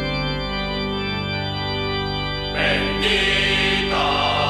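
Recorded Aragonese folk song (an albada): a chord of sustained instrumental tones held steady, with singing voices coming in about two and a half seconds in.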